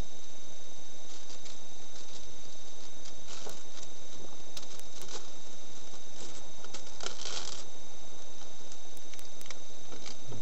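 Window tint film being handled and pressed onto wet glass: scattered light rustles, crackles and scrapes, a few bunched together about three and a half and seven seconds in, over a steady hiss.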